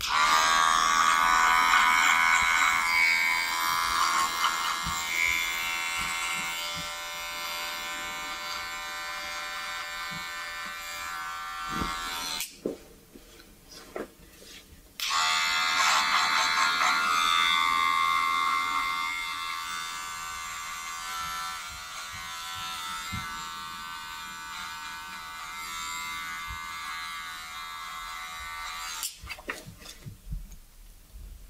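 Electric hair clippers running in two long passes with a short pause between, each loudest as it starts and then settling lower as the blades cut through short hair.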